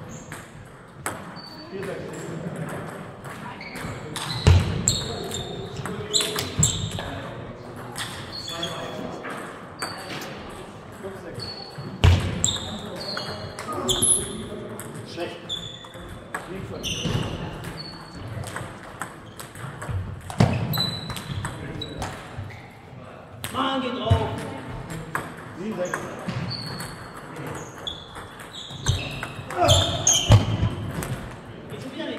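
Table tennis balls being struck by rackets and bouncing on tables in irregular rallies: a steady patter of sharp clicks and high pings, with a few heavier thumps.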